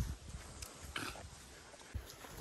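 A jaguar cub gives one short, low grunt about a second in.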